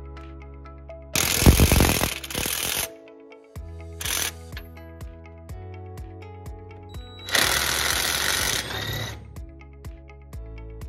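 Power wrench with a 24 mm socket running out the cab hold-down bolts in three loud rattling bursts: a long one about a second in, a short one around four seconds, and another long one past seven seconds. Background music plays throughout.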